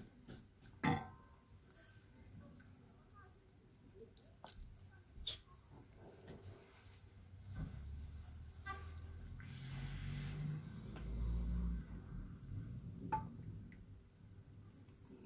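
A metal ladle knocks once against a glass serving bowl about a second in, followed by scattered small clicks and handling noise. A low muffled rumble builds in the second half.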